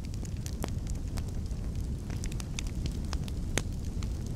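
A large building fire burning: a steady low rumble with scattered sharp crackles and pops.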